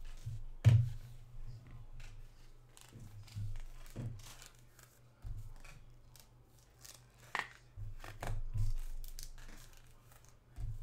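Trading card packs and cards being handled by hand: foil wrappers crinkling and a run of sharp, irregular snips and clicks, the loudest about a second in and another about seven seconds in.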